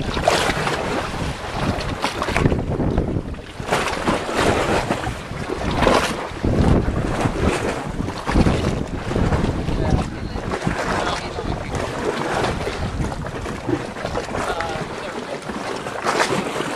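Wind buffeting the camcorder's microphone in uneven gusts, mixed with shallow seawater sloshing and lapping close by.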